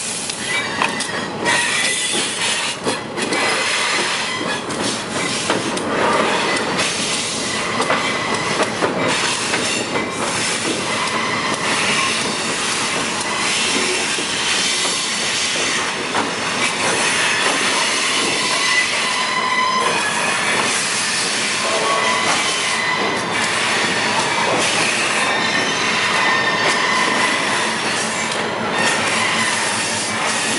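Locomotive rolling along jointed track, with the steady rumble of its running gear and a high wheel squeal on the curving rail that comes and goes, over light clicks from rail joints.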